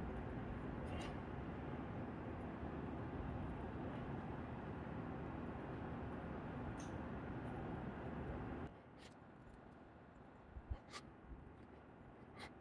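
Faint steady hiss that drops away suddenly about nine seconds in, then a few light clicks from a hand-turned T-handle tap wrench working a threading tool in the bolt hole of an aluminium engine mount.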